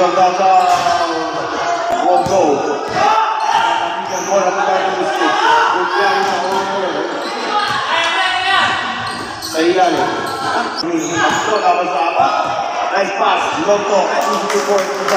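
A basketball bouncing on a hard court during a live game, with people's voices calling out over it throughout.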